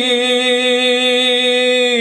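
Solo male lead vocal with the backing track muted, holding one long sung note with a pretty consistent, even vibrato.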